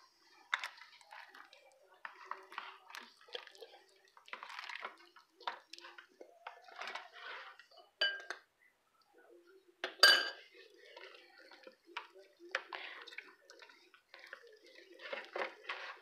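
Hands rubbing seasoning into a raw whole chicken in a stainless steel bowl, with irregular wet handling noises and knocks against the bowl. Two sharper clinks come near the middle, from a spoon scooping spice mix out of a ceramic bowl.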